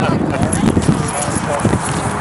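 Indistinct talking from several people at once, with no clear words, over steady outdoor background noise.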